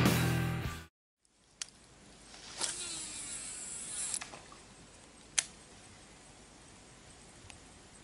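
Music fades out, then a Daiwa Tatula Type R baitcasting reel's spool whirs as line pays out on a cast, the whir falling in pitch for about a second and a half before it stops. A sharp click follows about a second later, and a fainter one near the end.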